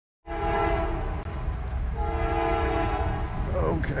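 Norfolk Southern diesel locomotive's air horn sounding a multi-note chord in two long blasts, over the steady low rumble of the approaching train. The sound starts abruptly a quarter second in.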